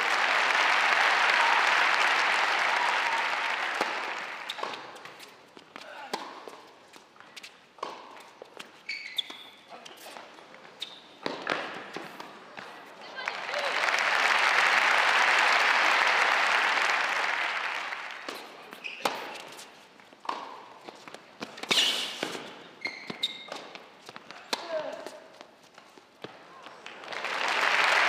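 Crowd applause in an indoor arena for a won point, fading after a few seconds, then a rally of sharp tennis ball strikes on racquets and the hard court; a second round of applause swells in the middle, followed by another rally of ball strikes and the start of more applause near the end.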